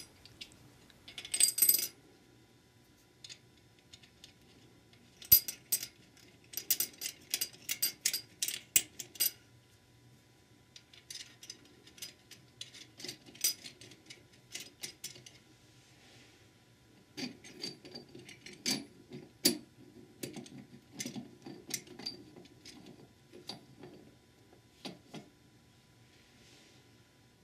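Steel flat washers and nuts clinking against a steel puller bar and threaded rods as they are fitted and threaded down by hand: runs of light metallic clicks and rattles in several bursts.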